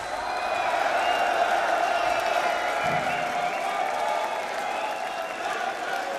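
Large concert crowd cheering, shouting and clapping in a steady wash of sound.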